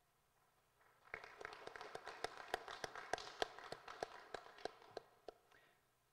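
Faint, sparse clapping from a small audience. It starts about a second in and fades out near the end.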